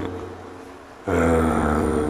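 A man's voice holds one long, steady low note, starting abruptly about a second in, as in a chanted or intoned passage.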